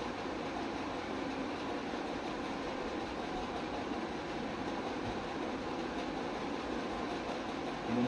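Steady background noise: a constant even hum and whoosh with no distinct events, the kind a running fan or air conditioner makes in a small room.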